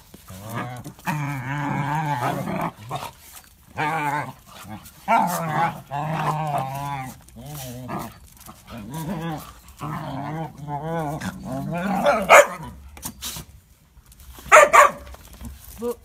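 Dogs play-fighting: repeated growling in stretches of a second or so, with sharp barks about twelve seconds in and again about two seconds later.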